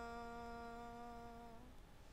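A woman's voice holding one long steady hummed note at the end of a line of an unaccompanied Punjabi folk song. The note stops about three-quarters of the way through, leaving faint room noise.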